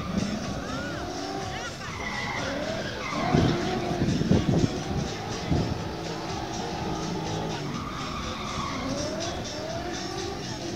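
Competition car engine revving hard up and down while its tyres skid and squeal as it is slid around a slalom course on asphalt, laying down tyre smoke; the loudest, roughest stretch comes in the middle.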